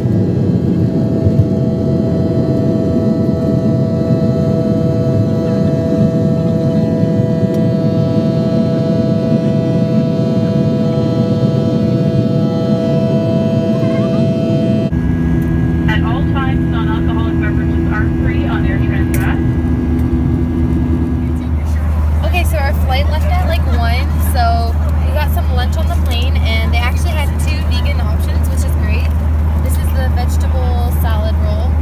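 Jet airliner engines on the takeoff roll: a loud steady roar with a constant high whine. About halfway it changes abruptly to a steadier cabin drone in flight, with indistinct voices over it and a deep hum in the last part.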